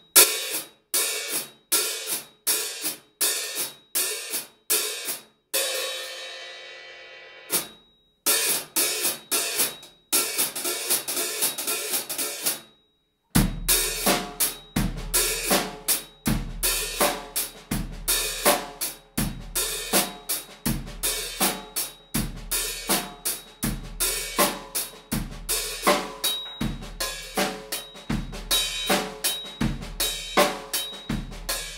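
A hi-hat played with drumsticks. There are steady strokes at first, then around six seconds in it is opened and left to ring out and fade, and then it is played faster. From a little before halfway, a bass drum thump about every second and a half joins the hi-hat in a steady groove.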